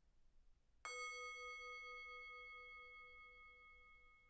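A meditation bell struck once, about a second in, ringing on with a slowly fading, gently pulsing tone over a few seconds. It marks the close of the meditation.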